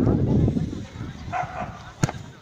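Voices close by in the first second, then a brief high-pitched call about a second and a half in.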